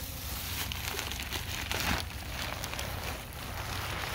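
Black plastic trash bag crinkling and crackling as it is handled, in irregular bursts of rustle that are busiest in the first half, over a steady low rumble.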